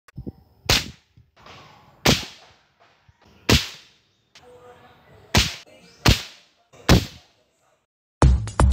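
Homemade rubber-powered speargun fired into water six times, each shot a sharp snap that dies away quickly.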